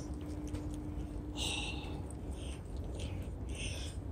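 Steady low hum of a powered factory building with a faint steady tone that fades out about halfway through, and a few soft scuffing footsteps on a concrete floor.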